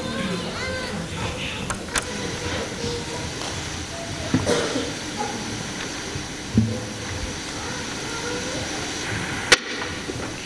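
Indistinct murmur of children's voices in a large hall, with shuffling and a few sharp knocks or clicks, the loudest near the end.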